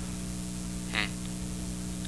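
Steady electrical hum with hiss, the background noise of an old interview recording, broken by one short 'hmm' from a man about a second in.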